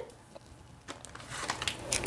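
Faint rustling of product packaging being handled, with a couple of light clicks in the first second and a soft crackle building toward the end.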